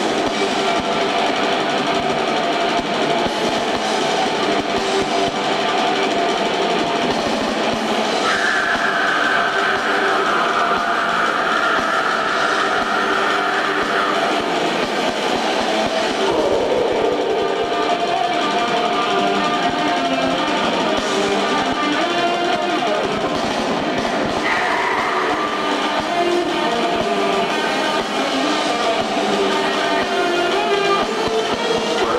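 Extreme metal band playing live: distorted electric guitars, keyboards and drums in a dense, continuous wall of sound, thin with little bass in this audience-made recording. About a third of the way through, a long high note is held for several seconds.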